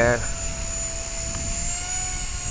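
Blade 180 CFX electric RC helicopter hovering, its new 3S six-pole brushless motor and rotors giving a steady whine that rises slightly in pitch near the end.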